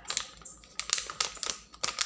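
Plastic packaging bag crinkling as it is handled, a run of short, irregular crackles and clicks.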